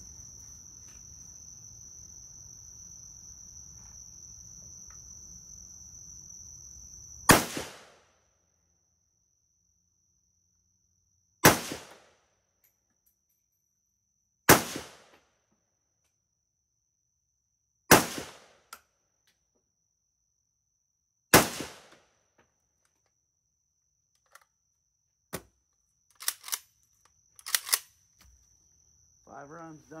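Hungarian AK-63DS rifle in 7.62×39mm firing five single shots slowly, about three to four seconds apart, each shot followed by a short echo. A steady high insect drone runs underneath, and a few light clicks come near the end.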